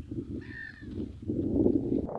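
A single short bird call, about half a second long and arching up and down in pitch, about half a second in, over a low rumbling noise that grows louder near the end.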